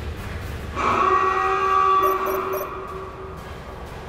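A horn-like chord of several steady tones comes in about a second in and fades away over the next two seconds or so, over a low rumble. It is a title sound effect.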